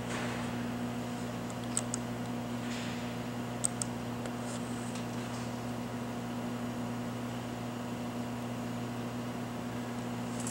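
Steady electrical hum and fan hiss from running test equipment, with two quick pairs of mouse clicks about two and four seconds in.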